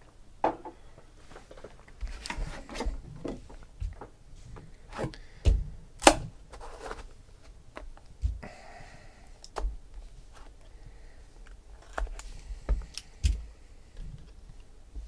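Cardboard trading-card boxes being handled and opened: scattered taps, knocks and clicks, the loudest about six seconds in, with a brief sliding rub a little past the middle.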